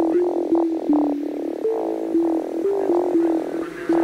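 Future house track in a breakdown: the drums drop out and a lone lead line plays a stepping melody of short held notes.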